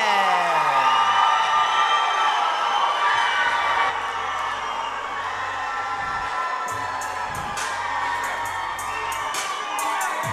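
Crowd cheering in a hall as walkout music starts. A tone sweeps steadily down in pitch over the first second or so, a low music bed comes in about three seconds in, and sharp beat hits join near the end.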